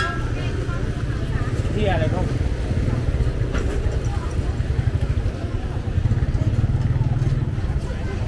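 Busy market crowd ambience: scattered voices of nearby shoppers and vendors over a steady low rumble.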